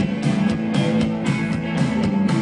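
Live rock band playing through a PA: electric guitar, bass and drums in a steady rhythm, heard from among the audience.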